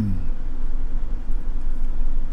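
A hummed 'mmm' of enjoyment falls away in the first moment. After it comes a steady low rumble inside a car cabin, typical of the car's engine running.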